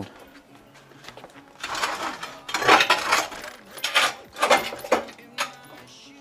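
A metal equipment rack being shifted and tipped, rattling and scraping in a run of irregular noisy scrapes and clinks that starts about a second and a half in and lasts until near the end.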